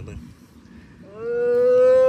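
A man's voice: a short word, then a long, loud drawn-out shout held on one slowly rising note for about a second near the end, trailing down as it stops.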